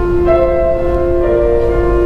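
Grand piano playing a slow passage of held notes, with new notes entering twice.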